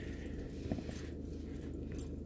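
Steady low hum of an Audi A3 1.6 TDI diesel engine idling, heard from inside the cabin.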